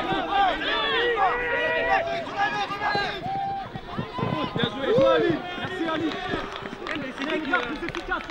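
Footballers shouting and calling to one another during play, several raised voices overlapping.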